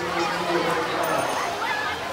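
Many children's voices shouting, calling and chattering over one another, with short high yelps. A low steady hum runs underneath for the first second and a half.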